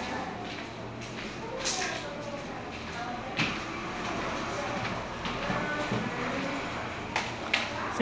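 Faint, indistinct voices in a room, with a few brief sharp clicks scattered through.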